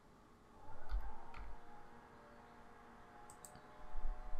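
A few computer mouse clicks: two about a second in and a couple of fainter ones near the end, over quiet room tone.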